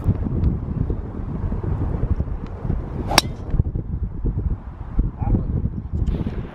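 Wind buffeting the microphone, and about three seconds in a single sharp crack of a driver striking a golf ball off the tee.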